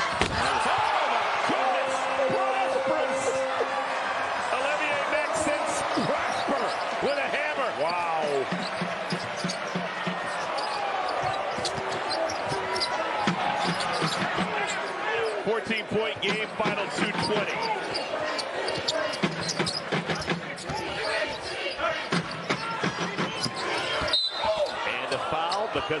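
Arena crowd noise during a live college basketball game, with a basketball dribbling on the hardwood court and sneakers squeaking on the floor.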